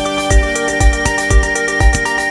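Electronic techno-style music played live on an Elektron Digitakt drum machine and Digitone FM synthesizer: a steady kick drum about twice a second under held synth tones, with a high synth note coming in about a third of a second in.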